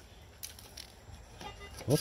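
Faint handling noise of a rusted sheet-metal canister turned over in a gloved hand, with a couple of light clicks, about half a second and a second and a half in.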